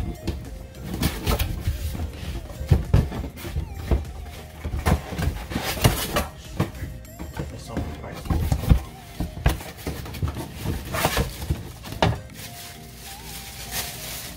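An aluminum nonstick pan set being unpacked from its cardboard box: a string of knocks and thunks as the box and plastic-wrapped pans are handled, with background music under it.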